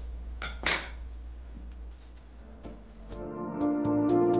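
Two or three sharp snips from scissors cutting satin ribbon in the first second. About three seconds in, gentle background music with held notes and a light beat about four times a second begins.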